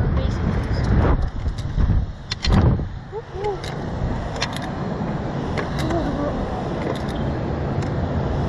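Wind buffeting the microphone of a camera fixed to a SlingShot reverse-bungee ride capsule as it swings through the air, as a loud rushing rumble. Scattered sharp clicks and a few short, faint voice sounds run through it.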